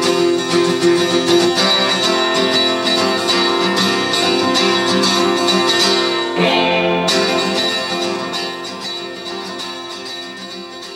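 Acoustic guitar played solo, its chords ringing, with a chord change about six seconds in and the sound slowly fading toward the end.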